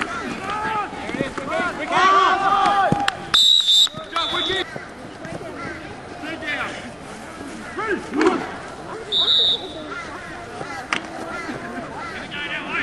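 Referee's whistle blown twice, first for about a second a little over three seconds in, then a short blast about nine seconds in, over players and spectators shouting.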